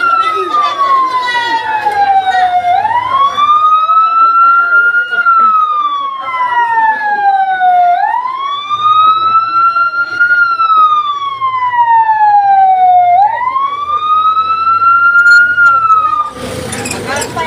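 An emergency vehicle's siren on a slow wail: the pitch climbs quickly, then falls slowly, repeating about every five seconds. This is the loudest sound throughout.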